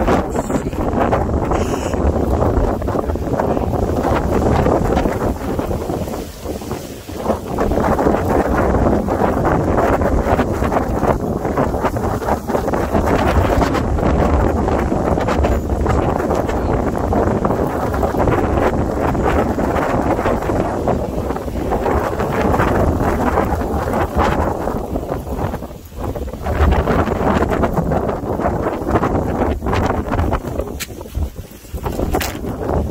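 Strong monsoon wind buffeting the microphone in loud, rushing gusts that ease briefly twice.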